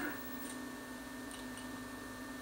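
Steady electrical hum with a thin high whine over it, and a few faint ticks about half a second in and again past the middle.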